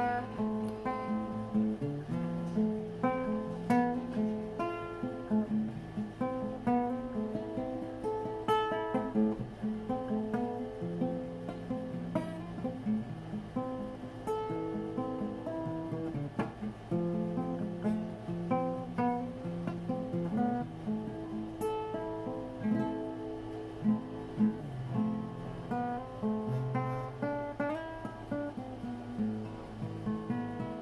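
Acoustic guitar playing a continuous instrumental passage of picked notes and chords.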